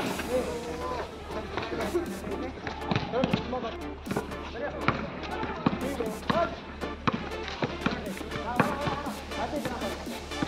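A basketball bounced and dribbled on a hard outdoor court, giving many sharp thuds, with players calling out to each other. Background music with a steady bass beat runs under it.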